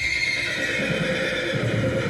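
A horse whinnying in one long call that slowly drops in pitch, with hoofbeats thudding in the second half as the horse runs.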